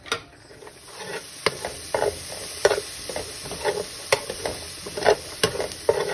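Diced onion frying in a hot metal pan: a steady sizzle builds about a second in, while a metal slotted spoon stirs and scrapes it across the pan bottom in repeated strokes, roughly two a second.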